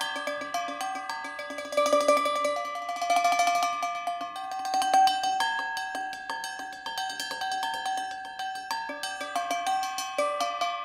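Solo percussion on instruments made from recycled objects: painted PVC pipes, plastic bottles and metal containers. They are struck in quick succession, and their ringing pitched notes make a melodic pattern, with a flurry of fast strikes about two to four seconds in.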